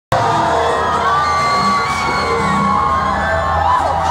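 Loud club music with a steady low bass, with a crowd cheering and whooping over it.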